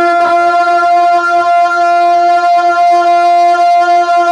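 A man singing one long, steady, sustained high note of a devotional manqabat, held without a break and amplified through a handheld microphone and PA.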